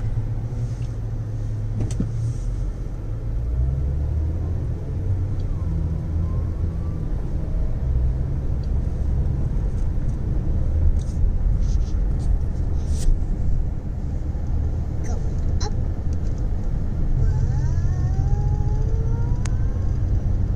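Car interior road noise while driving: a steady low rumble from engine and tyres, with a few brief clicks.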